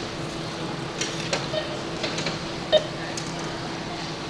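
Steady store hum with a few faint clicks and clinks as items are handled and put into plastic bags at a self-checkout bagging area.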